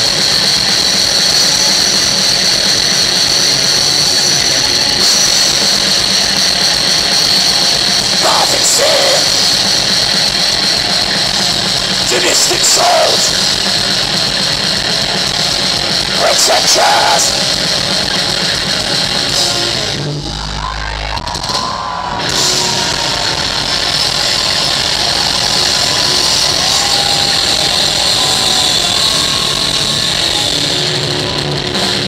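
Thrash metal band playing live at full volume: distorted electric guitars, bass and drums in a dense, loud wall of sound. About two-thirds of the way through, the sound briefly thins out with a low thump, then the full band returns.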